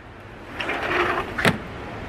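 A back door being opened: a second of rustling, then a single sharp latch click.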